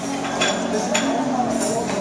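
Busy restaurant dining room: steady background chatter with a couple of sharp clinks of cutlery on dishes, about half a second and a second in.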